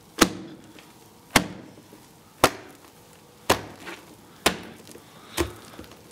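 Sharp knocks repeated at an even beat, about one a second, six in all, each dying away quickly.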